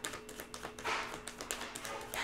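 A deck of tarot cards shuffled by hand: a quick, uneven run of soft card flicks and taps, with a couple of longer swishes as cards slide over each other.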